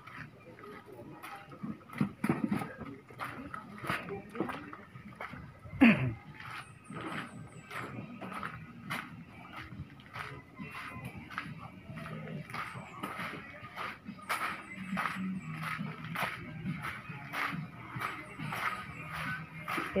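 Footsteps on a wet, muddy alley path, about two steps a second, with faint voices and a few bird chirps around. One loud, brief call sweeps downward in pitch about six seconds in.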